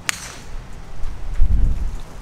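A golf club striking the ball on a tee shot: one sharp crack just at the start. A louder low rumble follows about a second and a half in.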